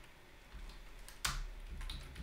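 Typing on a computer keyboard: a few separate keystrokes, the loudest a little past halfway.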